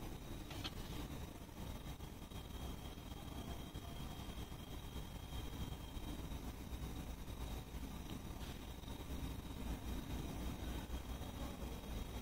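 Quiet room tone: a steady low hum and faint hiss, with one faint tick under a second in.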